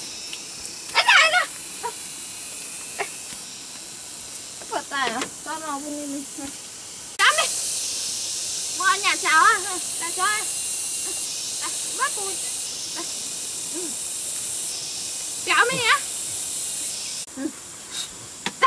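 Short vocal cries and exclamations, several of them with rising and falling pitch, over a steady high-pitched hiss that gets louder about seven seconds in and drops back near the end.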